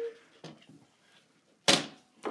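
A single sharp knock near the end, from a paper trimmer and a sheet of cardstock being handled on a tabletop. A faint tap comes before it, and little else is heard.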